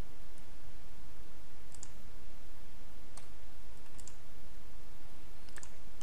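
A few sparse, separate computer mouse clicks over a steady low hum and hiss.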